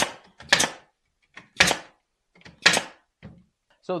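Pneumatic 18-gauge brad nailer firing four 1-inch nails into cedar picket boards, four sharp shots at uneven intervals of about half a second to a second.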